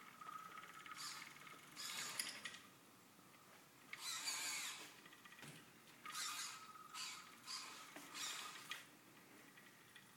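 Small mobile robot's electric drive motors whirring faintly in about half a dozen short start-stop bursts as it steers its wheels near a wall.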